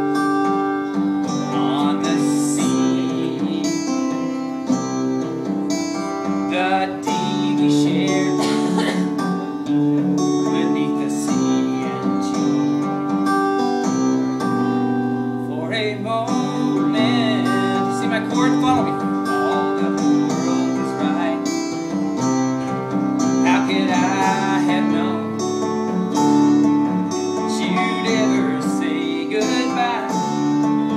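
Acoustic guitar sound from iPad guitar apps, several tablets strumming and picking a chord progression in the key of G together, with the chord changing every second or two.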